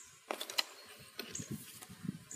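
Soft, scattered clicks and rustles of a spiral sketch pad and a roll of duct tape being handled, with the sharpest click about a third of a second in.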